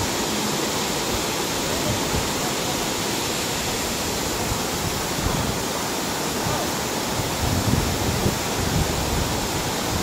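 Waterfall rushing: a steady, even wash of falling water.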